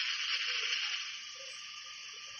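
Steady hiss of air blowing through a lottery ball-drawing machine as it mixes the balls for the Mega Ball draw, falling quieter about halfway through.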